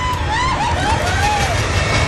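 A person wailing and sobbing in high, rising-and-falling cries, several in quick succession, over a steady low rumble.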